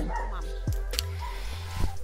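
Background music with a steady low beat. A short hissing noise comes in about halfway through.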